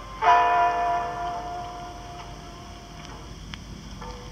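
Guitar music played back on a Sony TCM-150 cassette recorder: a chord rings out about a quarter second in and fades over about two seconds, leaving tape hiss with a couple of faint clicks.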